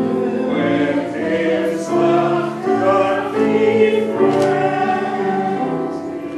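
A group of voices singing a hymn together in sustained chords that change about once a second.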